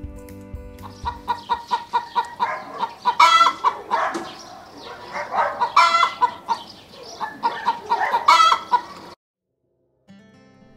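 Chickens clucking in quick repeated calls, with three louder calls from the flock about three, six and eight seconds in. The sound cuts off suddenly shortly before the end.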